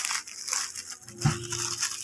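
Plastic courier pouch crinkling and rustling as it is handled, with a short dull thump a little past the middle.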